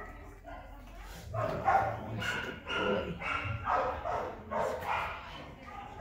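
A dog vocalizing in a run of short pitched calls, about two a second, starting a little over a second in.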